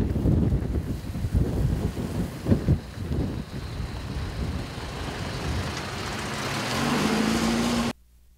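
Light truck driving slowly past on a rough gravel road, its engine and tyres rumbling unevenly over the ruts. In the last second or two an engine note rises steadily as a vehicle speeds up.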